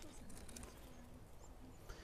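Near silence: faint outdoor background with no distinct sound.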